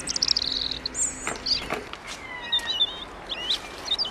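Birds chirping and whistling: a quick run of repeated notes falling in pitch in the first second, then scattered short chirps and warbles.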